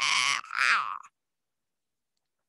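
A woman's shrill, strained vocal screech in a witch-like voice, in two pushes with a short break, cutting off suddenly about a second in.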